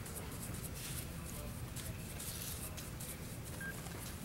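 A brush sweeping whiting (calcium carbonate powder) across window glass in repeated short, soft strokes, dusting off the oil left by fresh glazing putty. A steady low hum runs underneath.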